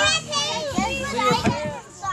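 Several young children chattering in high voices, talking over one another. The chatter drops away near the end.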